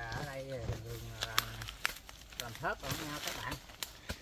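A man talking, with a few scattered sharp knocks, the loudest about a second and a half in: a blade chipping at the very hard wood at the base of a cầy (wild mango) tree trunk.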